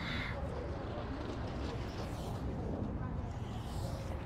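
Steady outdoor background noise with a low rumble and no distinct event; a brief hiss fades out just after the start.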